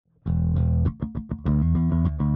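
Electric bass guitar playing a riff: a held low note starting a moment in, then a quick run of short plucked notes, then held notes again.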